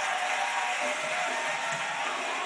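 Music playing over studio audience applause as a stand-up set ends.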